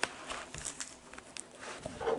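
Light crinkling and small clicks of a photo album's plastic page sleeves being handled.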